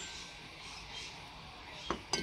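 Faint steady background noise, with one short knock near the end as a loose metal chainsaw cylinder is handled.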